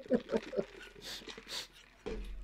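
A man's soft chuckling trailing off in the first half second, then two faint hissy breaths.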